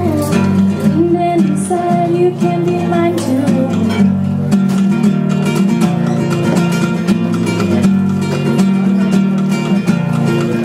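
Nylon-string classical guitar played in a live song, with a woman's voice singing held notes for the first three seconds or so, then the guitar going on alone.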